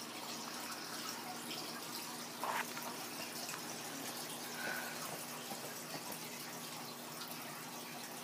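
Newborn puppies nursing on their mother, their faint suckling sounds over a steady hiss. There is a short high squeak near the middle and a brief sound a little earlier.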